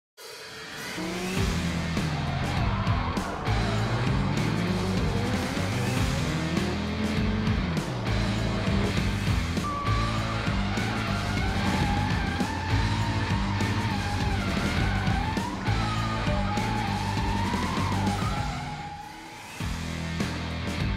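A drift car's engine revs up and down while its tyres squeal in a long wavering screech, laid under a driving music track. It opens with a short fade-in and dips briefly just before the end.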